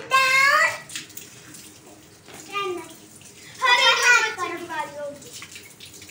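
Young children's high-pitched voices: a squeal at the start, a short call about two and a half seconds in, and a longer, wavering call around four seconds, over a faint steady hiss.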